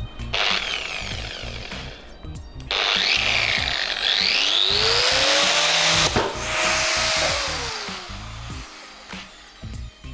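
Angle grinder run up to speed and grinding, with a single sharp crack about six seconds in. The motor then winds down and fades. The disc fitted to it has cracked apart from the middle, the second such disc to fail.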